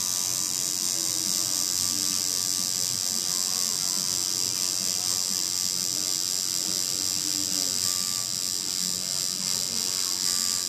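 Electric tattoo machine buzzing steadily as it runs needles into the skin, colouring in a tattoo.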